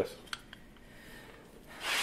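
A short, noisy rush of breath blown through a slip of paper held between the thumbs, near the end, with no whistle tone coming out: the paper fails to sound.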